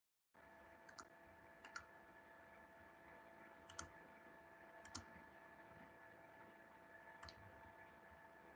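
Faint computer mouse clicks, about five spread through the quiet, several heard as quick double clicks, over a faint steady electrical hum.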